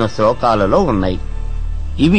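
A man speaking for about the first second, then a pause. A steady low hum and faint background music run underneath.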